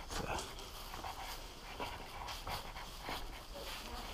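A dog panting, with irregular soft footsteps on concrete.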